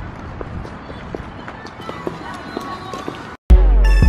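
Low background ambience with distant voices and scattered light ticks. After a brief moment of dead silence near the end, a loud music track with a drum-machine beat starts.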